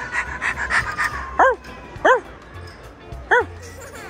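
Three short, high dog yips, each a quick rise and fall in pitch, spaced well under a second apart, the second and third about a second and a quarter apart, over soft background music.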